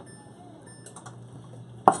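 Chef's knife on a wooden cutting board while slicing pork belly: a few faint taps, then one sharp knock near the end.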